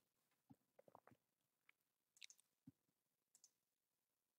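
Near silence with a handful of faint computer mouse clicks.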